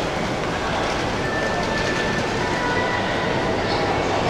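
Steady mechanical rumble of an indoor mall's background noise. A faint thin high squeal comes in about a second in and lasts a couple of seconds.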